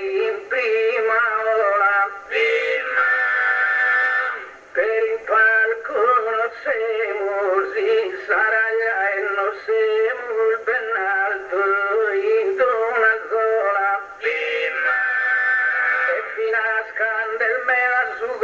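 Male voice singing a slow, ornamented chant in the style of Sardinian improvised poetry (gara poetica), the pitch wavering and bending through long held notes.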